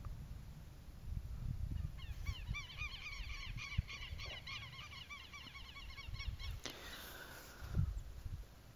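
Faint bird calls in the background: a quick run of short, repeated arched notes lasting several seconds, over a low rumble.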